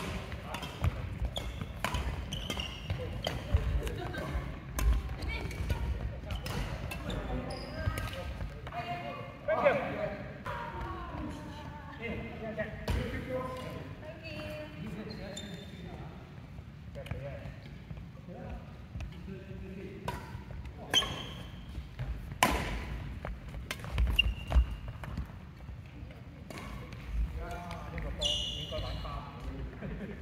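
Badminton play on a sports-hall court: sharp racket strikes on the shuttlecock at irregular intervals, with shoe squeaks and footfalls on the wooden floor. People talk in the background.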